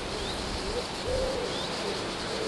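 A bird's low hooting calls, two short ones, over a steady rushing noise.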